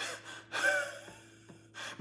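A woman's short gasps and breaths, a brief voiced one about half a second in and a quick intake near the end, acting out the reaction to a sudden stab of sciatic nerve pain.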